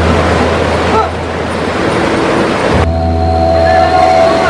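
Churning river water and splashing under a low steady drone; a little under three seconds in the sound changes abruptly and the drone starts again.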